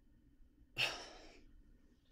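A woman's single exasperated sigh: one short breathy exhale about three-quarters of a second in, fading within about half a second.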